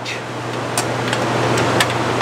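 Steady background noise with a low hum, and a few light clicks in the second half as the metal cover of a quick-disconnect box is fitted up under its hooks.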